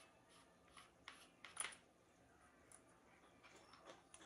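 Near silence with a few faint clicks and scrapes of metal AR-pistol parts being handled as the micro buffer assembly is taken apart, the loudest click about one and a half seconds in.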